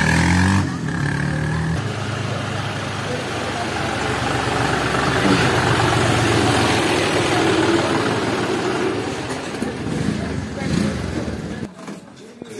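John Deere 5050D tractor's three-cylinder diesel engine running, its note shifting in pitch over the first two seconds, then a steadier, noisier running sound that cuts off sharply near the end.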